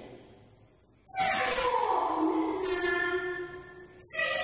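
Cantonese opera music: after a brief lull, a single long note starts about a second in and is held for nearly three seconds, sliding downward in pitch.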